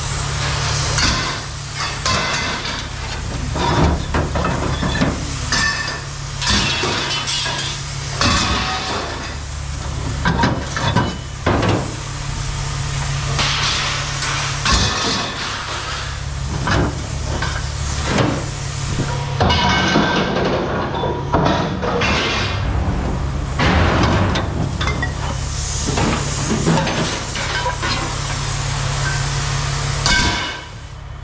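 Scrap metal pipes and brackets being pulled from a trailer and thrown into steel bins: repeated irregular metal clanks and clatters, over a steady low rumble.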